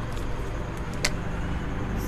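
A steady low rumble with a single sharp click about a second in: the snap of a whiteboard marker's cap coming off.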